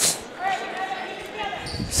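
A volleyball bounced once on a hardwood gym floor by the server before his serve, a short sharp thud at the start, with faint voices in the hall afterwards.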